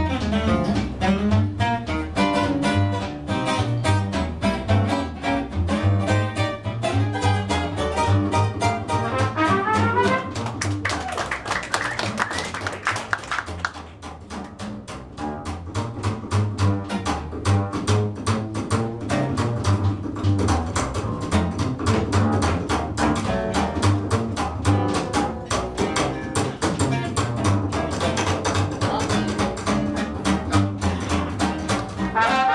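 Small jazz band playing: an archtop guitar carries the music over a plucked upright string bass walking a steady beat, while the trumpet and clarinet rest. The music eases briefly about halfway through.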